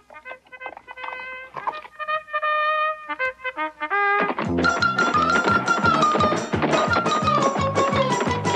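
Trumpet fanfare of short, bright, separate notes, as a herald's call. About four seconds in, a loud, fast music cue with a steady driving beat takes over.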